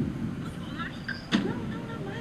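Outdoor street noise: a steady low rumble, like passing traffic, with faint voices. It cuts in abruptly at the start, with a single sharp click partway through.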